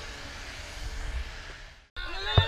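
Wind buffeting an outdoor camera microphone: a steady rushing hiss with an uneven low rumble, fading out just before the end.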